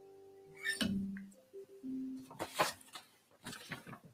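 The last strummed chord on an acoustic guitar rings out and dies away within the first second. A few short, soft notes and faint clicks of hands on the guitar follow.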